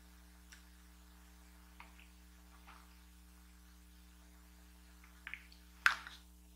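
Faint steady electrical hum with a few faint clicks, the two sharpest near the end.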